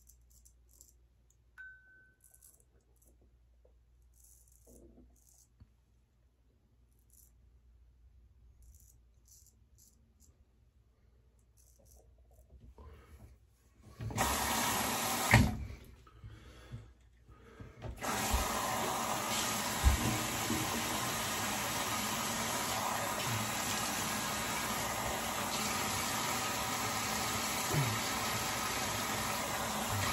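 Faint short scrapes of a straight razor's blade cutting stubble, then a bathroom tap turned on about halfway through, water running steadily into the sink for rinsing.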